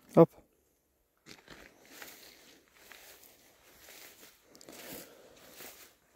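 A short spoken command, then soft, uneven crunching and rustling of footsteps through grass and dry vegetation.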